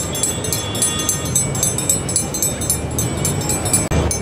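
Steady low rumble of outdoor background noise, with a brief dropout just before the end.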